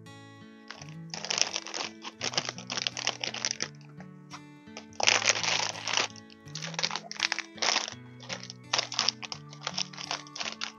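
Thin plastic packaging crinkling and rustling in irregular bursts as plastic-wrapped template binders are handled, loudest about halfway through. Background music with a slow, stepping bass line plays throughout.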